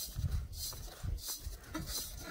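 Hand twisting and rubbing the metal air-cleaner cover on a Briggs & Stratton I/C engine as it is tightened down. Short, faint scraping rasps come about every half second over soft handling rumbles.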